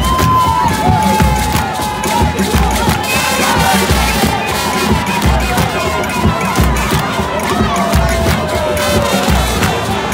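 Football supporters singing and chanting together in the stands, with hand-clapping and a steady low drum beat about once a second. A long held note slides slowly down in pitch through most of it.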